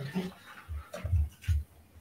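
Handling noise on an open microphone: three soft, deep thumps in quick succession about a second in, with faint rustling and breath.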